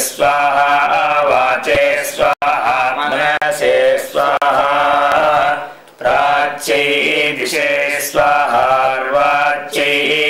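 Male voice chanting Vedic Sanskrit mantras in a steady, level recitation tone, with a short pause a little past the middle.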